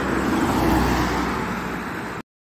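An SUV driving past close by on the road, its tyre and engine noise swelling about half a second in and then fading.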